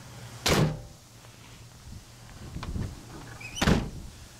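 The rear doors of a 2008 Ford E350 Econoline van being shut, one slam about half a second in and a second near the end, with a light click and rattle between them.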